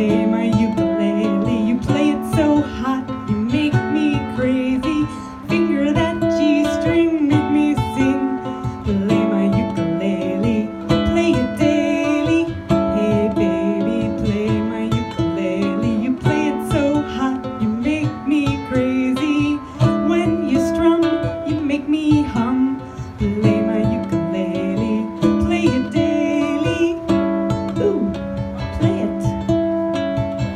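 Ukulele playing a blues song, chords strummed and notes picked in a steady rhythm.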